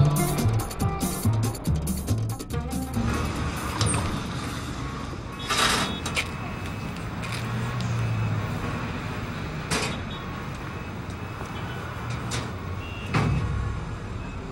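Background music with a steady beat that fades out after the first couple of seconds, giving way to city street traffic noise with a few short sharp clatters.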